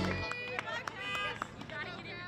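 A loud music chord ends about a quarter second in. After it come indistinct voices too unclear to make out, with a few sharp clicks among them.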